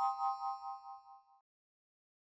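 A bright chime of several ringing tones sounds together as the logo sting at the video's end. It fades out with a wavering shimmer and is gone after about a second and a half.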